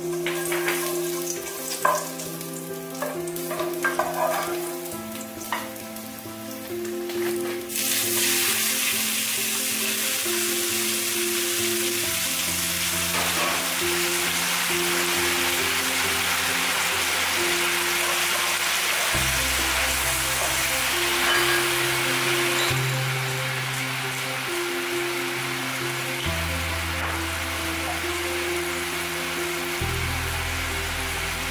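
Garlic frying quietly in a nonstick wok with a few clicks of a wooden spatula on the pan, then a sudden loud sizzle about eight seconds in as squid and tomato hit the hot oil, frying steadily while being stirred. Background music plays throughout.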